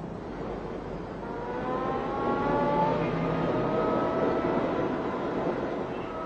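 Car engine accelerating, its pitch rising steadily for a few seconds as it grows louder.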